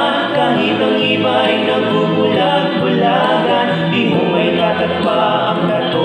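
A male vocal trio singing a Tagalog gospel song in close harmony, holding long notes.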